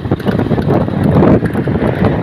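Wind rushing over the microphone of a moving motorcycle, with the motorcycle's running and road noise underneath: a loud, steady rush.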